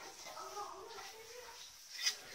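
Faint, indistinct voices in the background; no clear work sounds.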